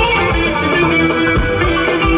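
Loud live band music: a plucked-string lead melody over bass and a steady drum beat.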